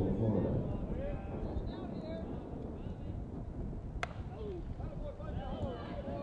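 Ballpark ambience at a softball game: distant shouts and chatter from players and spectators over a steady low rumble, with one sharp crack about four seconds in.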